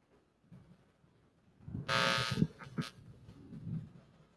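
Handling noise from a handheld microphone being fitted into its stand clip: soft low bumps, then about two seconds in a short loud buzzy scrape of the microphone against the clip, followed by a sharp click.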